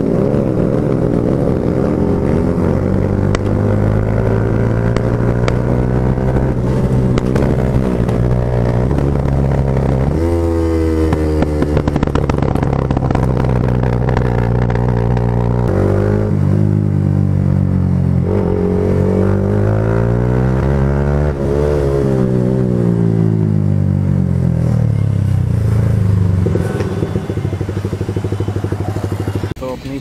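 Single-cylinder 155 cc motorcycle engine running under way, heard from the rider's seat. Its pitch rises and falls with throttle and gear changes, with a marked shift about a third of the way in and a rise and drop a little past halfway.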